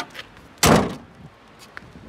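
A Vauxhall car's bonnet being shut: one heavy slam about two-thirds of a second in, with a couple of light clicks just before it.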